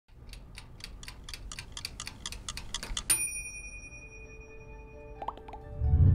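Title-sequence sound effects: a clock-like ticking, about four ticks a second for nearly three seconds, ending in one bright bell ding that rings on. Soft music with a held tone then begins.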